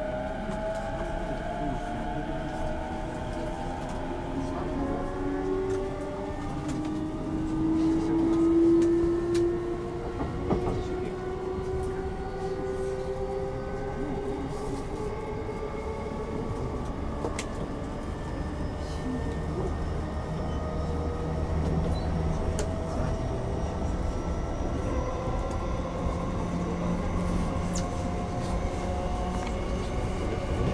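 Electric commuter train heard from inside the car, on a JR Yokohama Line E233-series set. The traction motors' whine rises in pitch over the first ten seconds or so as the train accelerates, then settles into a steady run over a low rumble with occasional clicks from the rails.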